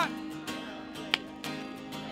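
Acoustic guitar strummed softly, its chord ringing on between a few strokes, with one sharp click about halfway through.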